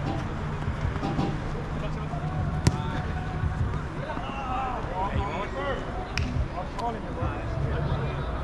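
Five-a-side soccer on artificial turf: players' voices carry from across the pitch over a steady low hum. A ball is kicked sharply about two and a half seconds in, the loudest sound, and two lighter ball knocks follow near the end.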